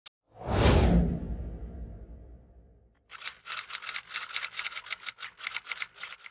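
Intro sound effects: a whoosh with a deep boom swells up about half a second in and fades away over two seconds. After a short silence, a rapid run of sharp clicks, about eight a second, lasts to the end.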